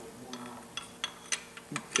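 A few faint, scattered metallic clicks and taps from parts being handled on an engine block, as the oil pump is worked onto its driveshaft.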